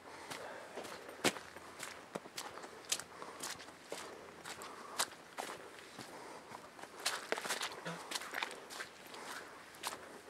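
Footsteps of a person walking on a wet, muddy dirt trail: irregular scuffs and light clicks, the sharpest about a second in.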